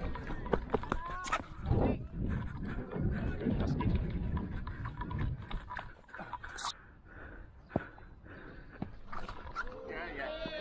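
Wind rumbling on a helmet-mounted action camera's microphone, heaviest in the first half, with irregular footsteps and knocks as the batsman moves about.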